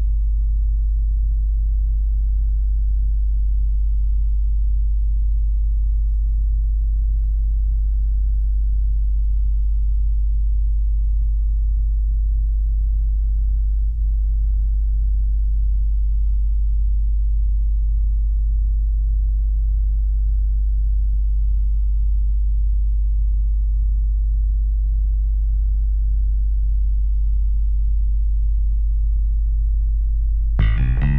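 A loud, steady, very deep drone, a low hum that holds unchanged throughout with only a brief dip about halfway through.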